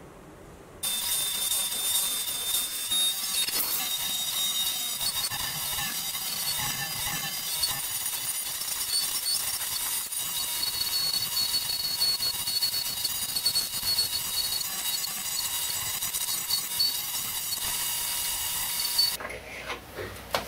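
Turning tool cutting a spinning hardwood workpiece on a wood lathe: a steady hissing scrape with a thin whine through it. It starts abruptly about a second in and stops about a second before the end.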